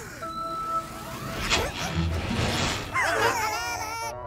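Cartoon flying-saucer lift-off effect over light background music: a swooping whoosh about halfway through, then a low rumble as the saucer rises, with warbling sci-fi tones near the end.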